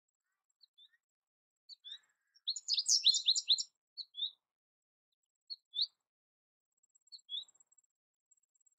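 American goldfinch singing: a rapid run of high twittering notes lasting about a second, followed by short two-note calls spaced a second or more apart.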